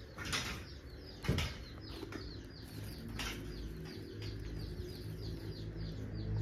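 Rice straw rustling as straw mushrooms are picked by hand from the straw bed, with a few sharper rustles about a third of a second and a second and a quarter in. Small birds chirp in quick series in the background over a low steady hum.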